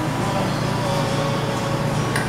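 Steady low background hum in a restaurant dining room, with a faint steady tone above it and no distinct events.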